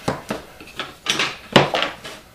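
Wooden boards knocking and clattering against a workbench as taped-together box panels are laid out flat: several sharp knocks, the loudest about one and a half seconds in.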